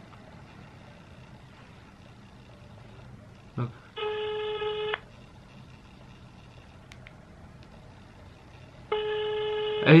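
Ringback tone of an outgoing call played through a phone's speaker: two steady one-second tones about four seconds apart, the sign that the call is going through and ringing at the other end.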